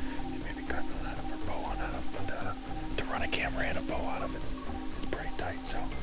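Hushed, whispered talk over soft background music with steady held notes.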